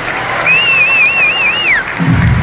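Audience applauding. A high, wavering whistle cuts through from about half a second in and glides down as it stops near the end.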